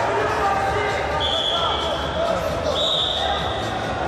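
Two steady, high whistle blasts about a second long each, the second slightly higher, over shouting voices echoing in a large hall.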